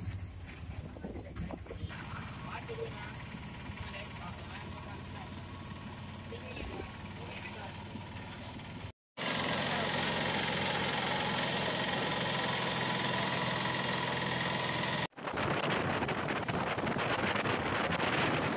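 Engine running and road noise heard from inside a moving auto-rickshaw. About nine seconds in the sound cuts out for a moment and returns louder: a steady rush of road and wind noise from a moving vehicle. A second short dropout a little after fifteen seconds gives way to a rougher, louder rush.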